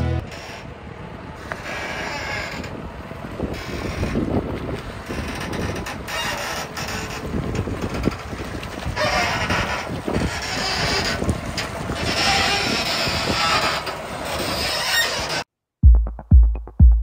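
Farm tractor running, heard close up with a rough rattling rumble and stretches of hiss that swell and fade. It cuts off suddenly near the end.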